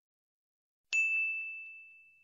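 A single bell-like ding about a second in: one clear high tone that fades out slowly.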